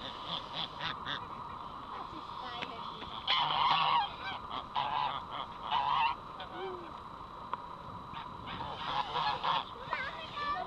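A group of grey-and-white domestic geese honking in several bursts, loudest about three to four seconds in and again near the end.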